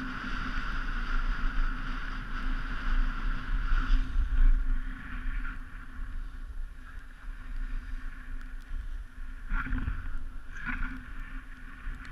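Wind rumbling on a moving action camera's microphone over the steady hiss of edges sliding on groomed snow, with two brief louder scrapes near the end as the rider turns.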